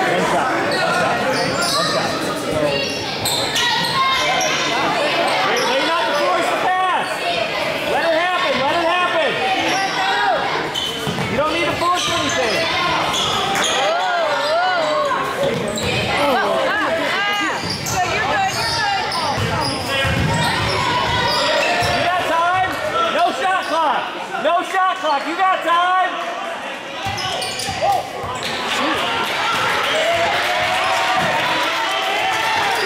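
Basketball dribbling and bouncing on a hardwood gym floor during play, with players' shoes squeaking and voices calling out, all echoing in a large gym.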